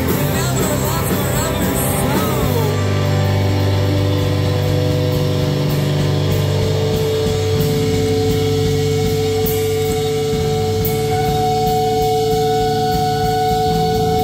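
Live punk rock band playing amplified: a voice over electric guitar, bass and drums for the first few seconds, then the bass and guitars hold long sustained notes with scattered drum and cymbal hits.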